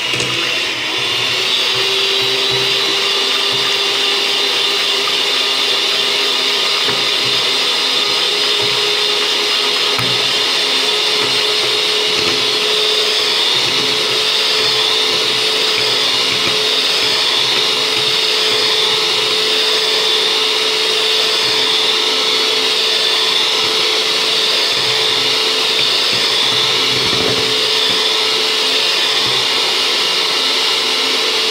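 Imarflex electric hand mixer running steadily, its beaters whipping chilled all-purpose cream in a stainless steel bowl to build volume. The motor keeps one unbroken whine, rising slightly in pitch over the first couple of seconds.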